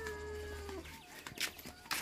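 A chicken's drawn-out call that falls slightly in pitch, lasting most of the first second, followed by two sharp clicks.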